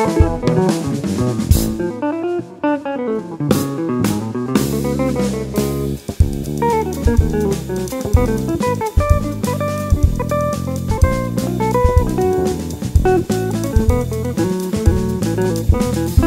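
Instrumental samba-jazz quartet playing: electric guitar prominent over drum kit, bass guitar and piano.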